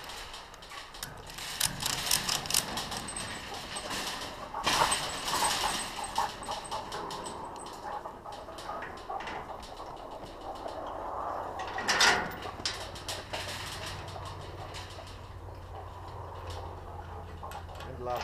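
Clinks, rattles and knocks of a rope pulley, chain and snap hooks being handled against a steel livestock trailer gate, with louder knocks about five and twelve seconds in.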